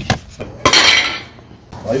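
A single sharp knock about two-thirds of a second in, trailing off over about half a second.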